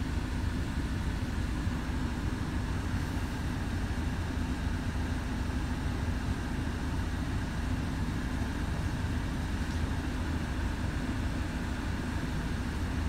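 Citroen Relay 2.2 turbo diesel four-cylinder engine idling steadily, heard from inside the cab as an even low rumble.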